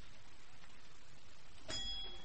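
Shop-door bell ringing once near the end, a bright ring that fades over about a second; before it only a steady low hiss.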